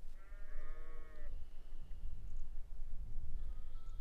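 A single drawn-out animal call, about a second long near the start, over a steady low rumble.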